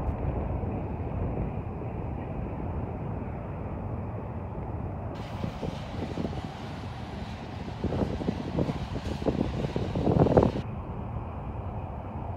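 Freight train of covered hopper cars rolling slowly past: a steady low rumble of steel wheels on the rails. A run of sharp clanks and knocks comes from the running gear or couplers in the second half, the loudest just after ten seconds in.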